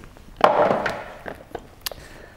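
Plastic anatomical eyeball model being handled: a short scraping rustle about half a second in, then a few light clicks as its parts knock together.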